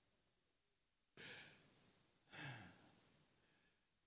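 Near silence broken by two faint breaths from a man at a handheld microphone, about a second in and again halfway through; the second carries a little voice, like a soft chuckle.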